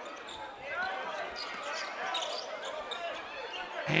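Basketball bouncing on a hardwood court in an indoor arena during live play, with faint voices from players and crowd in the hall.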